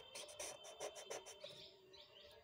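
Felt-tip permanent marker scrubbing on paper in quick back-and-forth colouring strokes, several a second, stopping just over a second in. Faint chirps follow near the end.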